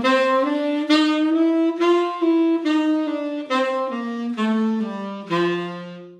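Tenor saxophone playing the dominant bebop scale on G7 (written key) in even eighth notes. It climbs through the chromatic F-sharp passing note to the top G, then runs back down the scale and ends on a held low G, the root, near the end.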